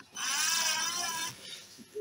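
Cordless drill driving a stainless steel screw into an epoxy-packed hole, its motor giving a high whine for about a second that wavers in pitch as the screw turns, then tails off.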